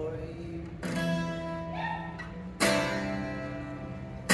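Acoustic guitar strummed in a live hall. Two chords are struck about two seconds apart, about a second in and past two and a half seconds, and each rings on and fades.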